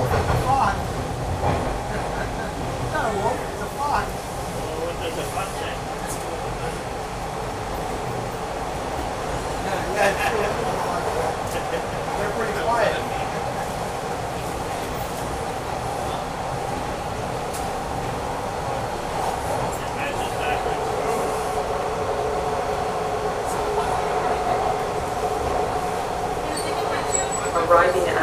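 Toronto subway train running through a tunnel, heard from inside the car: a steady rumble of wheels on rail with a sustained whine that grows stronger in the second half.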